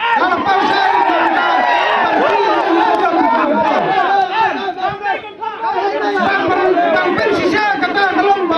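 Speech: a man addressing a crowd through microphones and a public-address system, with many voices talking or calling over one another.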